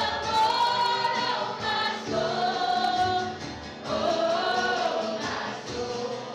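Live worship band: women singing a slow hymn-like melody in held phrases, accompanied by acoustic guitar and piano.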